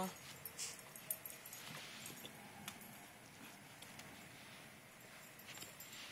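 A dog whining faintly in short, thin calls, with a few soft clicks over a quiet outdoor background.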